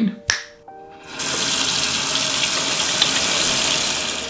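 Water from a tap running steadily into a sink as hands are washed, starting about a second in. A short sharp click comes just before.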